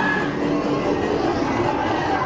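A dark ride's soundtrack music playing steadily over the running of the ride vehicle.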